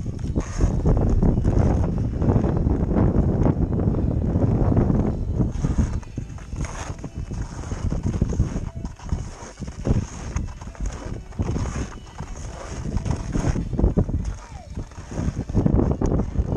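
Wind buffeting the microphone in a heavy, uneven rumble, with irregular knocks and crunches of movement over hard-packed snow.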